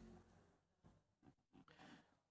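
Near silence: the tail of a held musical chord dies away in the reverberation at the start, followed by a few faint, soft knocks and rustles.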